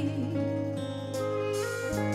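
Live band accompaniment of a slow trot song holding sustained chords between sung lines.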